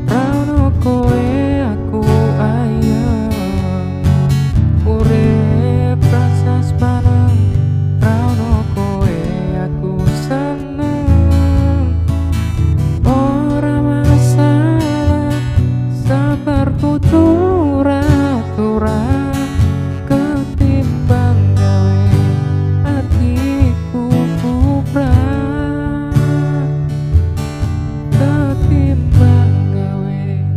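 A male voice singing a Javanese pop song to a strummed Yamaha CPX600 electro-acoustic guitar.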